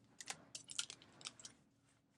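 A deck of tarot cards being handled in the hands: a quick run of faint clicks and card snaps during the first second and a half.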